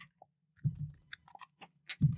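A scatter of faint, short clicks and crinkling from a drink can handled close to the microphone, its tab being worked, with no loud clean crack.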